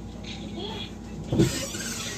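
Old cartoon soundtrack with character voices, then a single loud thump about one and a half seconds in.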